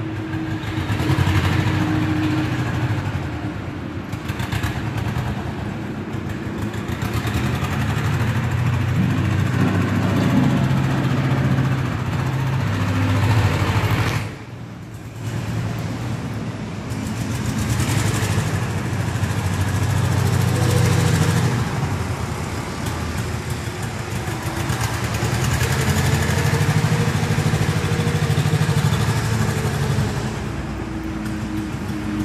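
A vehicle engine running steadily, with a brief drop in level about halfway through.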